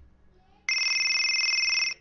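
An electronic phone ringtone: a steady, high ringing tone that starts abruptly about two-thirds of a second in, lasts just over a second, and cuts off sharply. It is the ring at the start of a custom MP3 name ringtone, just before its recorded voice line.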